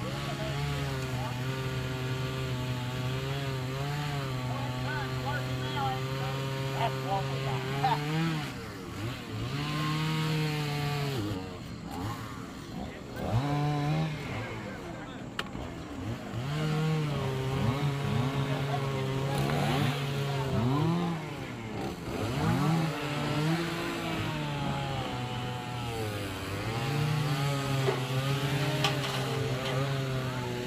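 Chainsaw running at high revs while cutting. Its pitch sags under load and climbs back, and it drops off and swoops up again several times, mostly in the middle of the stretch.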